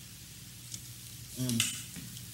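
Steady low hum with a faint hiss, the quiet lead-in of a studio rough-mix recording being played back, then a man's voice says 'um' about a second and a half in.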